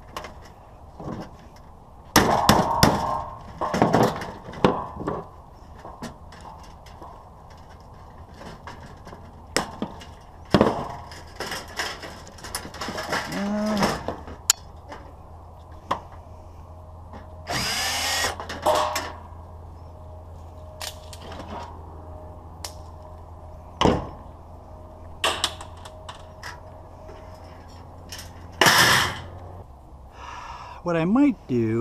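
Battery-powered DeWalt drill/driver running in two short bursts, one about two-thirds of the way through and one near the end. Around it are scattered knocks and clatter from a sheet-metal light fixture and its wiring being handled.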